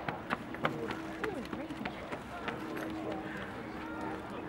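Faint background voices of people talking, with a few light clicks scattered through.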